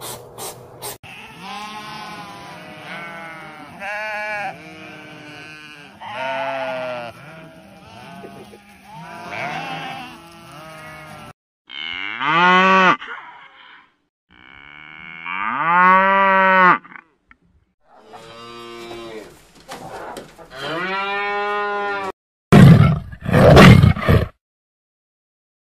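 A hedgehog's few quick snuffles, then a herd of cattle mooing: about ten seconds of overlapping calls, then three long single moos. Near the end a tiger begins a loud roar.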